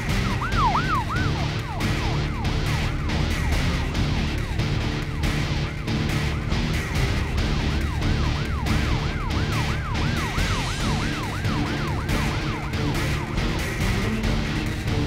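An emergency-vehicle siren in fast yelp mode, about three rising-and-falling sweeps a second, clearest at the start, fading, then coming back from about halfway. Background music plays under it throughout.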